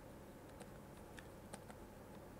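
Near silence with a few faint ticks of a stylus tapping and stroking on a tablet screen as a word is handwritten.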